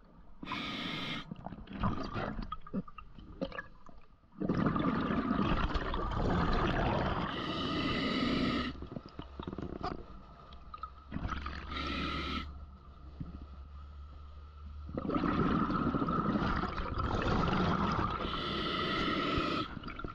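Scuba diver breathing underwater through a regulator: short hissing inhalations alternating with long, loud bursts of exhaled bubbles, about two breath cycles.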